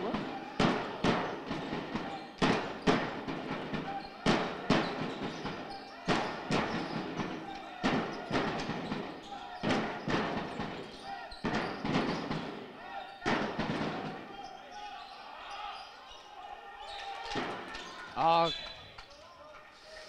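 Basketball bouncing repeatedly on a wooden sports-hall court during play: sharp impacts, several a second for most of the stretch, then sparser near the end. Voices carry through the hall, with a short shout near the end.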